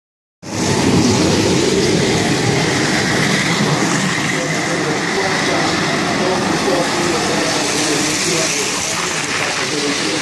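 Racing carts rolling down a wet street, their wheels making a steady rumble and hiss on the asphalt, mixed with indistinct voices.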